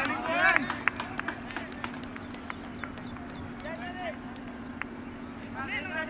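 Cricket players shouting calls across the field, in a burst at the start, once around the middle and again near the end, with scattered sharp clicks in the first few seconds over a steady low hum.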